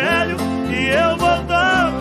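Live sertanejo music: a slow country ballad with a band's guitars and bass holding chords under a wavering, sliding lead melody.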